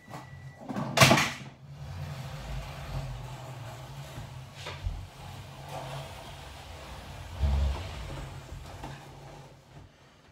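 A loud knock about a second in, then an armchair being pushed and dragged across the floor with a steady low rumble, a sharper knock near the middle and a low thump later on.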